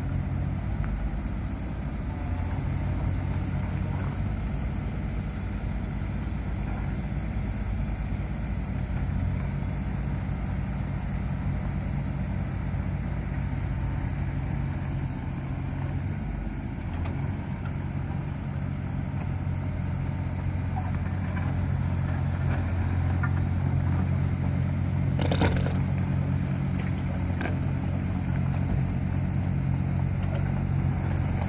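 Diesel engine of a Caterpillar 302.7D mini excavator running steadily, its note shifting about halfway through, with crunching and scraping as the machine works over loose gravel. A single sharp clank sounds near the end.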